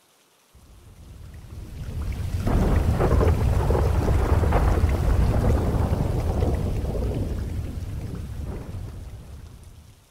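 Rolling thunder with rain, swelling up over the first two seconds and fading out slowly toward the end.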